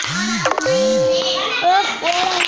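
Children's voices in a classroom, speaking and calling out, with one steady held tone in the middle.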